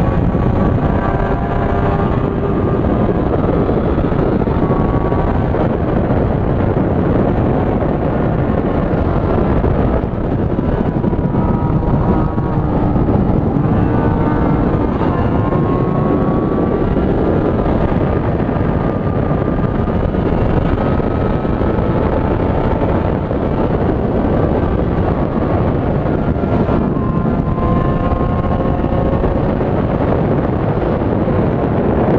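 Honda Hornet 600's inline-four engine running steadily at highway speed, heard from a camera mounted on the motorcycle, under heavy wind noise on the microphone. The engine note drifts a little up and down as the throttle changes.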